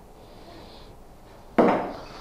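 A nylon e-track cargo strap being handled and fed through a pallet jack's handle: a faint rubbing, then one loud sharp knock near the end that dies away over a fraction of a second.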